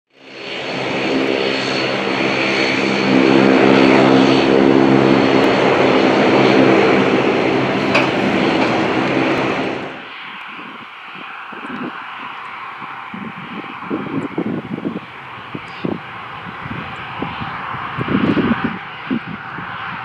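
Loud, steady aircraft engine noise with a droning hum for about the first ten seconds. Halfway through it cuts suddenly to the quieter sound of a Gulfstream G550's twin Rolls-Royce BR710 jet engines at taxi idle, with uneven low noise underneath.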